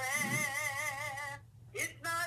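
A single voice singing a worship song, holding one long note with vibrato for about a second and a half, then a short breath before the next phrase begins near the end.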